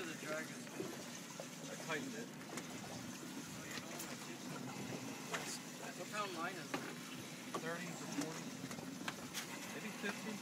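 Faint, indistinct voices of people talking aboard a small boat over a low wash of water against the hull, with a few faint clicks.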